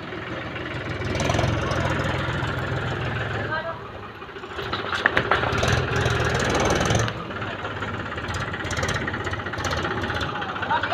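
Mahindra farm tractor's diesel engine running at low speed, its level swelling and easing, with a brief dip about four seconds in.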